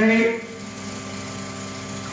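A man's chanting voice over a microphone holds a note and breaks off a moment in. After it, a steady hum with a few faint held tones runs on.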